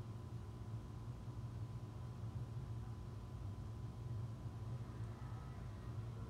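Quiet room tone: a faint steady low hum with a thin steady high tone, and no distinct sounds.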